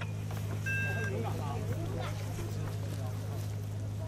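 Several people chattering in the background over a steady low hum, with a short high beep about a second in.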